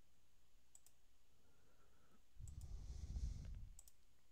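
A few faint, spread-out computer mouse clicks, with a low muffled rumble lasting about a second in the second half, the loudest sound here.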